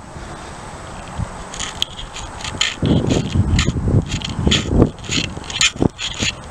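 Footsteps swishing through lawn grass, starting about a second and a half in and going at about two to three steps a second, with low thuds as the feet land.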